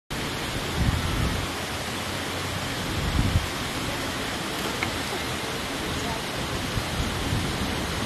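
Steady rushing noise with low rumbling gusts about a second in and again around three seconds: wind buffeting the camera microphone.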